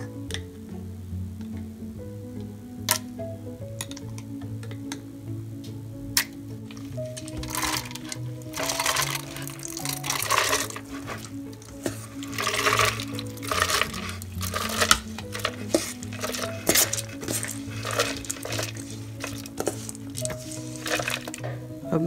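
Soaked lentils and rice tipped from a steel bowl into a plastic blender jar, the wet grains sliding and rattling in repeated bursts through the middle and latter part, after a few sharp clicks early on. Background music plays under it.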